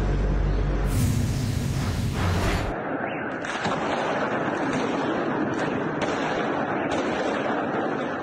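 A heavy low rumble with a rush of noise as an out-of-control tractor-trailer crashes along the street. About three seconds in this gives way to a dense crackle of fireworks with scattered pops and bangs, the rockets bursting against apartment buildings.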